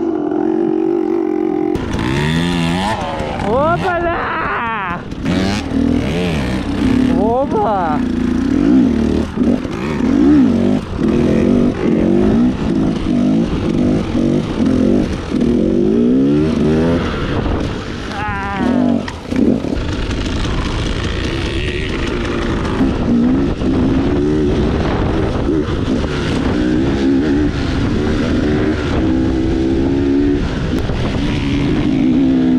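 KTM enduro dirt bike engine under a rider, revving up and down as it is ridden off-road, with several sharp rising revs a few seconds in and again near the middle.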